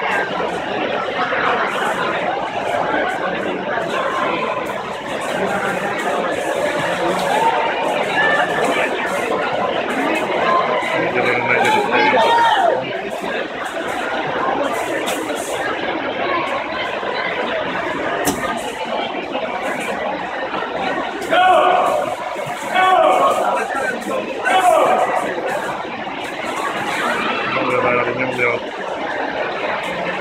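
Spectators shouting and cheering at a swim race in an indoor pool hall: a steady din of many voices, with loud drawn-out yells about twelve seconds in and three more in quick succession a little past the twenty-second mark.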